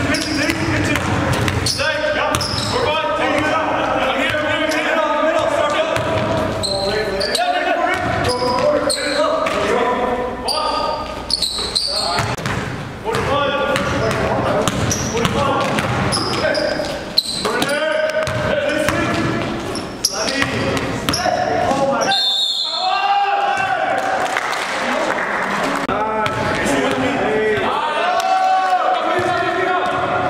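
Basketball game sound in a gym: a ball dribbling on the hardwood floor, sneakers squeaking in short high bursts, and players' voices calling out, all echoing in the large hall. A few sharp knocks stand out, one about two thirds of the way in.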